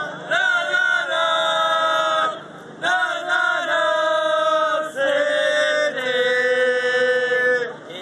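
A group of Manchester City football supporters singing a chant together. They sing in three long phrases of held notes, each about two seconds, and the last one steps down in pitch.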